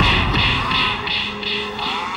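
Fight-scene soundtrack: a man's drawn-out pained groan over background music that pulses about three times a second.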